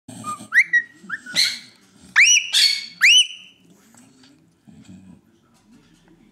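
Princess of Wales parakeet calling: a quick series of about seven short rising chirps and one harsh screech in the first three and a half seconds.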